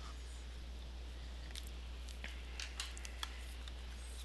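A few faint, short clicks and taps of small tools being handled and set down, over a steady low electrical hum.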